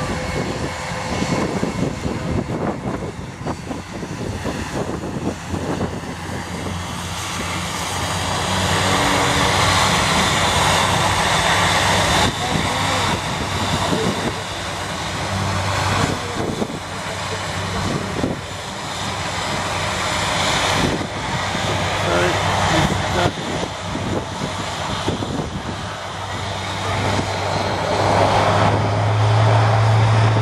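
Airbus A380's four jet engines heard from the ground during a flying-display pass: a steady broad rush over a low hum, swelling about ten seconds in and again near the end as the airliner comes closer.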